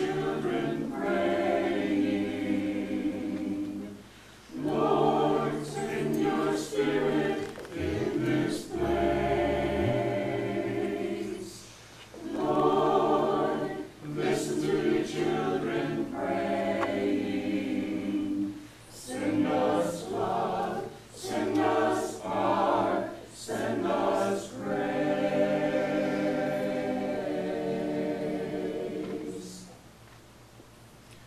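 Church choir of mixed men's and women's voices singing a short sung prayer, in phrases of a few seconds with brief pauses between them, ending just before the end.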